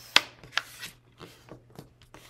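A sheet of colored paper being folded in half by hand on a table: a sharp tap as it comes down, then rustling and rubbing as the fold is pressed flat.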